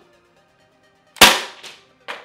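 Gas-powered pellet pistol firing once, a sharp crack about a second in, followed by a fainter click. Faint background music plays underneath.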